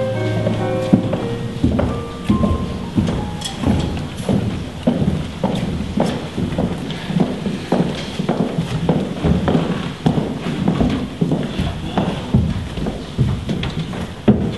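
Piano music fades out in the first second or two, then footsteps of several people walking on a wooden stage floor, irregular knocks two or three a second.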